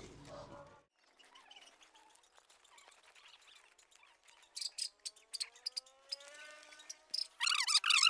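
Birds chirping in short quick bursts, about halfway through and again near the end, with a faint rising tone in between, over a quiet outdoor background with faint scattered clicks.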